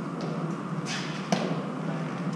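A single sharp smack of a hard Eton Fives ball, a little over a second in, with a short scuff just before it.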